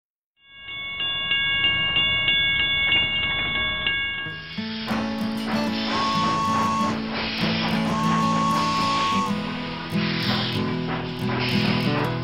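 Intro of a children's train song. It opens with about four seconds of train sound, a steady whistle tone over a rhythmic chug, and then the band comes in with bass and guitar.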